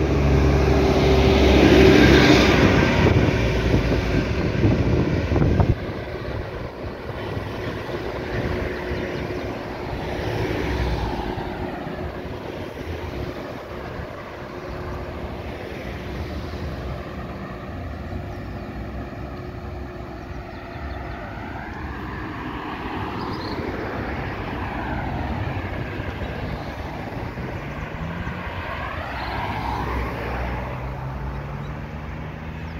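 Road traffic: cars passing close by on a two-lane highway. It is loudest in the first few seconds and drops suddenly about six seconds in. After that comes a quieter steady hum of traffic, with engine tones rising and falling as vehicles go by.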